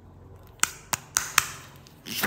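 Four sharp plastic clicks in quick succession, about a quarter second apart, from fingers handling and twisting the two halves of a hollow plastic toy egg capsule.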